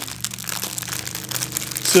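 Clear plastic packaging crinkling and rustling as it is handled, a run of small irregular crackles.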